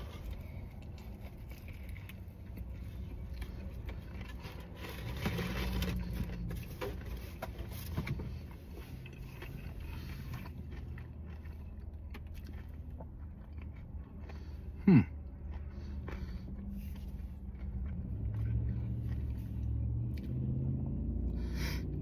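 A person biting into and chewing a grilled chicken sandwich, with soft mouth smacks and small clicks, over a low steady rumble in a car's cabin. A short 'hmm' comes about fifteen seconds in.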